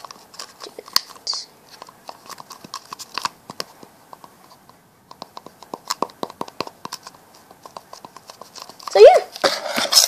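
Irregular light clicks and taps of hands handling a clay-covered plastic bottle, with a lull about four to five seconds in. A short rising voice sound comes near the end.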